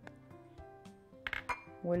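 A few light clinks against a glass mixing bowl as baking powder is added to flour, the loudest cluster about two-thirds of the way in, over soft background music.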